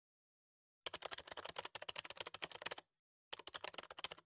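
Typing sound effect: fast key clicks in a run of about two seconds, a short pause, then a second run.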